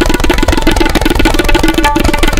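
Tabla playing a very fast, dense run of strokes in drut (fast) teentaal. A sarangi holds faint steady notes underneath.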